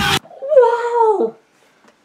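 A man's single drawn-out exclamation, an "ohhh", high and falling in pitch and lasting about a second. Just before it the music and talk cut off suddenly.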